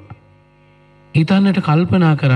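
A short pause holding a faint, steady electrical hum, then a Buddhist monk's voice resumes a little over a second in, with long, drawn-out vowels in a preaching delivery.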